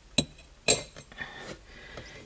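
A blade cutting through a woody plant stem on a plate, clinking sharply against the plate twice about half a second apart, then scraping faintly.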